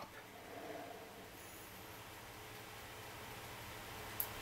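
Faint steady background noise with a low hum and no distinct sound events.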